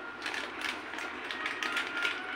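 Faint, scattered light clicks and taps over room hiss, with a thin steady high tone underneath.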